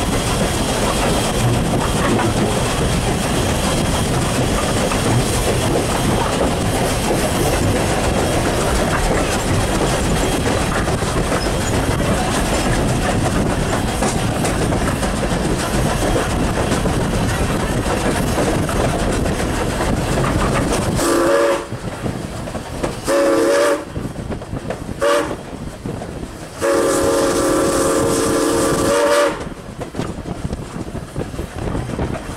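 Canadian National No. 89 steam locomotive running with a steady rumble of wheels on the rails, then its chime steam whistle sounds four blasts near the end: two medium, one short and a long last one, the pattern of a grade-crossing signal.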